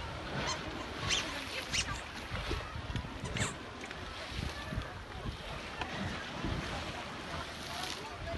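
Wind gusting on the microphone by a windy shore, an uneven low rumble, with faint distant voices and a few short sharp sounds on top.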